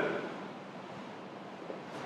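Steady faint hiss of room tone, with no distinct sound event.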